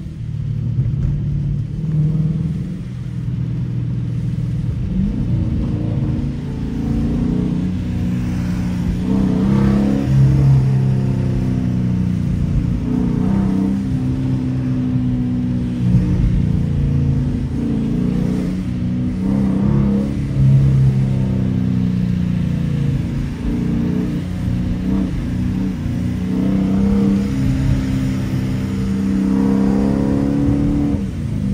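Dodge Challenger R/T's 5.7-litre Hemi V8 heard from inside the cabin, pulling the car along at low road speed. Its note rises and falls in pitch as it works through the revs.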